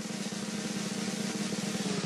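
A fast, steady snare drum roll played as a suspense build-up before a name is announced.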